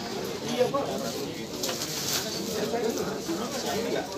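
People talking in the background, with a bird calling among the voices.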